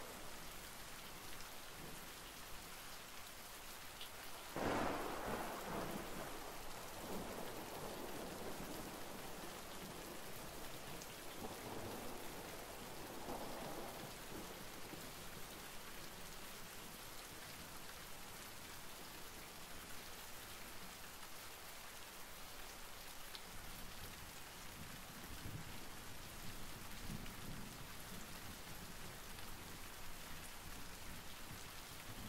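Steady rain, with a clap of thunder about four and a half seconds in that rumbles on and fades over a few seconds, and fainter rumbles of thunder later.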